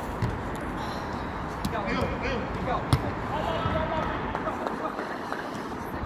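A football being kicked on an artificial-turf pitch: a few sharp thuds, the loudest about three seconds in, amid players shouting to one another.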